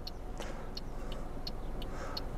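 Toyota Aygo's turn-signal indicator ticking steadily, about three short clicks a second, faint against a low background hum.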